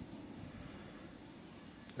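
Faint, steady low background rumble with no distinct events.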